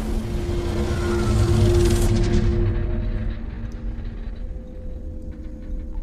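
Storm-at-sea sound design: a low roar of wind and heavy seas under a sustained, low, ominous music drone. The hissing top of the roar drops away about two seconds in, leaving the drone over a low rumble.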